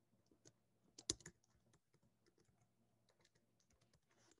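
Faint computer keyboard typing: a scattered run of light key clicks, the firmest cluster about a second in.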